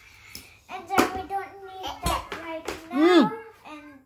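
A young boy's voice talking, with a rising-and-falling exclamation about three seconds in. Two sharp plastic clicks, about one and two seconds in, come from him handling the plastic toy-car carrying case.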